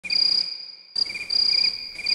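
Cricket chirping: high-pitched pulsing trills, with a pause of about half a second near the start.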